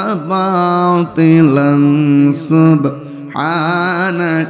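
A man's solo voice, unaccompanied, chanting a devotional Bengali verse in long, held, melodic phrases through a microphone and PA system, with short breaths between phrases about a second in and just past three seconds.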